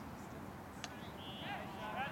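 A single sharp crack of a cricket bat hitting the ball a little under a second in, followed by raised voices calling out as the batsmen set off on a run.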